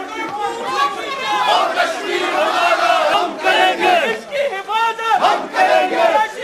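A crowd of protesters shouting slogans, many voices at once, breaking into short repeated shouts in the second half.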